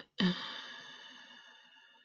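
A sighed "yeah" trailing off into a long breathy exhale that fades away over about a second and a half.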